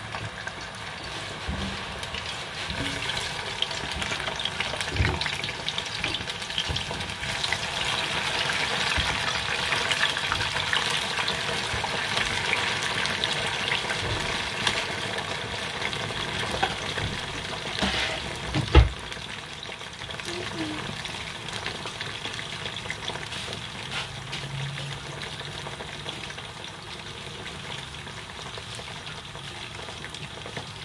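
Food deep-frying in a pot of hot oil, a steady sizzle that builds over the first several seconds and then eases off a little. A single sharp knock about two-thirds of the way through.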